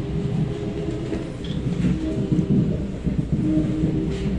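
SMRT C751B electric train heard from inside the car as it pulls out of a station and gathers speed: a steady low rumble of wheels on rail with a faint whine from the traction motors.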